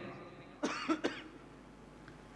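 A person's short cough, about half a second long, a little over half a second in.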